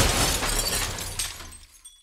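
Movie crash sound effect: glass shattering and debris clattering after a body is thrown onto a desk. The noise fades out over nearly two seconds.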